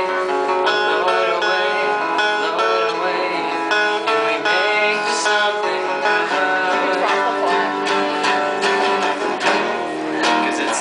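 Two acoustic guitars strumming chords together in a rock-song accompaniment.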